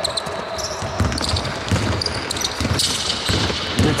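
A basketball bouncing on a wooden court during play, a series of irregular dull thumps, with short high squeaks of sneakers on the floor.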